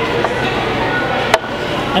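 Steady hubbub of a busy public hall, with one sharp knock about one and a third seconds in, likely the wooden box or a hand striking the table.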